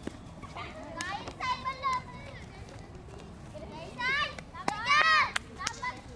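Girls shouting and calling out during a field game: a few short high-pitched calls about a second in, then louder calls with rising and falling pitch around four to five seconds in.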